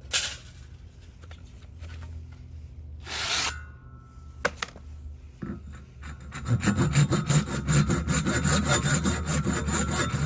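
A few knocks and scrapes as the PVC pipe is handled in the vise, then about six seconds in a Lenox 18-inch PVC/ABS hand saw starts cutting the PVC pipe with fast, steady rasping strokes. The sawing is the loudest sound.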